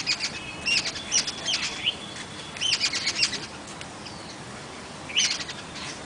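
Small birds chirping in several short runs of quick, high calls, with quiet gaps between them.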